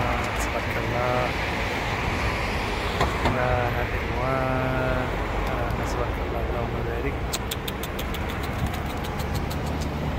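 Steady low rumble of city traffic and wind on the microphone, with short bursts of a man's voice in the first half. A rapid run of faint clicks comes near the end.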